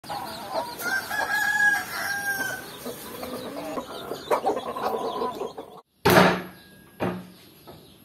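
Domestic chickens clucking, with a rooster crowing. After a brief break about six seconds in, a loud thump and a second, weaker one about a second later.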